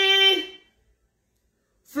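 A woman's voice holding one long sung note at a steady pitch, fading out about half a second in.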